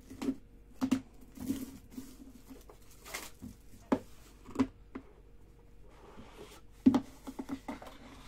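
A cardboard trading-card box being handled on a table: several sharp knocks and taps as it is turned and set down, and a few short rustles as the lid is slid off the box.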